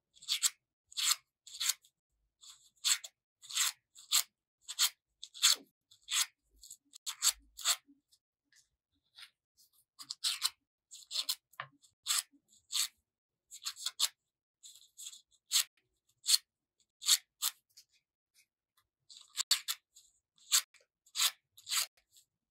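Scissor blade scraping along thin paper in short, quick strokes, about one or two a second with brief pauses, as the petals of a paper flower are curled over the blade.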